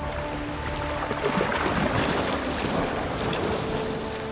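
Steady rush and splash of water churned up by dolphins surging through shallow water, under soft sustained background music.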